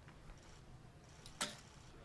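An Olympic recurve bow shot: the bowstring snaps once, sharply and briefly, as the arrow is released about 1.4 s in.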